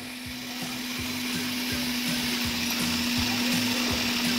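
Electric food processor running steadily with a constant motor hum, cutting butter into flour and water for a pastry dough; the sound swells gradually louder over the few seconds.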